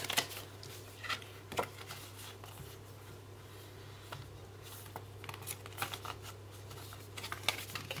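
Paper banknotes being handled, with faint, scattered clicks and rustles that grow busier near the end, over a low steady hum.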